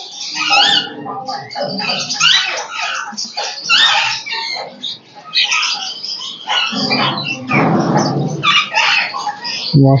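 Alexandrine parakeets squawking in a nest box: a rapid run of harsh, pitch-bending calls, with a longer rasping sound about seven seconds in.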